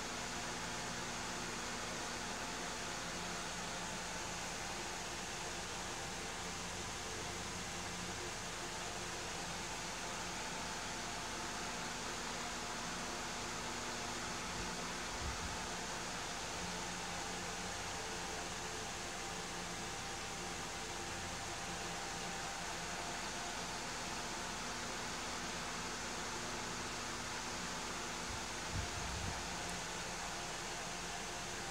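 Steady room noise: an even hiss with a faint low hum underneath. Two brief soft bumps, one about halfway through and one near the end.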